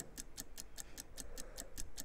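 Countdown-clock ticking sound effect on a TV broadcast: quiet, rapid, evenly spaced ticks, several a second, marking a running 30-second sale countdown.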